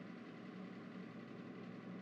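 Faint, steady background noise, an even hum and hiss with no distinct events.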